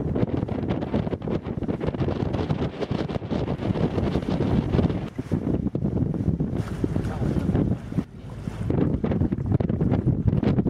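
Rumbling, gusty wind noise buffeting a microphone, with a brief lull about eight seconds in.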